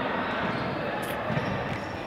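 Sports hall ambience: a basketball bouncing somewhere in the gym, with faint voices echoing in the background.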